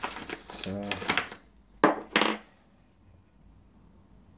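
Two sharp metallic clinks about a third of a second apart, from a welded steel angle-bar bracket being handled with its bolts.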